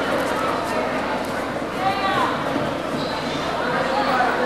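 Audience chatter in a hall, with one short high-pitched vocal call about two seconds in that rises and falls in pitch.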